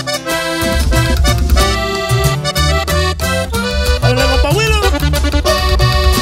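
Norteño band music: a button accordion plays the lead melody of the introduction, and an upright bass comes in under it less than a second in, with the band in a steady rhythm.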